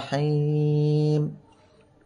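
A man chanting, holding one long steady note that stops about a second and a quarter in; then near silence.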